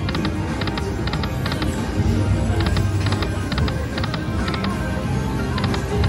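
Aristocrat Timberwolf video slot machine spinning its reels: its electronic game sounds play with repeated quick, high ticks in groups of two or three, about two groups a second, as the reels spin and stop.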